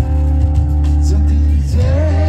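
Live rock band playing loud amplified music, with electric guitar, bass guitar and drums holding sustained notes. A sung line with vibrato comes in near the end.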